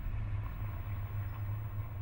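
A steady low hum of background noise, with no speech over it.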